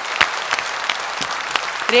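A large audience applauding, a dense steady clapping. A woman's voice comes back in right at the end.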